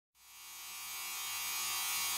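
A steady, buzzy sustained tone fading in gradually from silence, the lead-in to the trailer's soundtrack.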